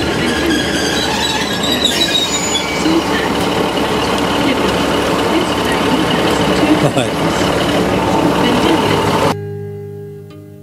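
A diesel multiple-unit passenger train stands at a station platform with its engines running steadily, among voices on the platform. Near the end the sound cuts off suddenly and acoustic guitar music begins.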